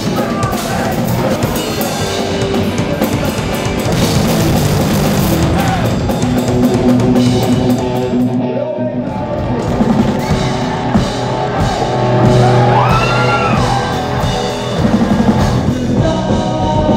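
Rock music with a drum kit and electric guitar playing steadily; the cymbal-bright top end thins out briefly about halfway through.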